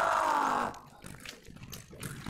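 A fencer's loud, drawn-out shout after a scored touch, lasting under a second with its pitch falling slightly, then quieter hall background.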